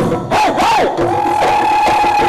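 Massed Bihu dhol drums under the shouts of many performers: a couple of rising-and-falling whoops, then one long held high note from about a second in.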